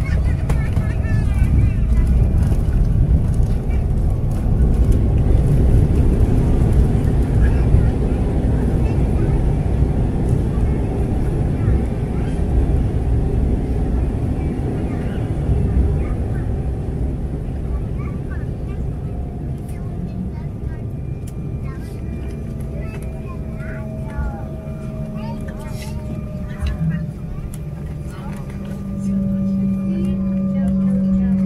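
Cabin sound of an Embraer E190 jet's landing roll-out: a loud, low rumble of wheels and rushing air as the aircraft brakes on the runway with ground spoilers raised. The rumble eases after about fifteen seconds as the jet slows, and a whine sliding slowly down in pitch comes in over it.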